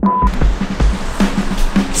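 A short beep of a steady 1 kHz test tone, like the tone that goes with colour bars, cut off after about a quarter second. Then background music with a steady, thumping beat.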